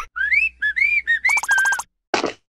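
A cartoon larva whistling a short tune: a string of rising and falling notes, then a quick warble and a final held note.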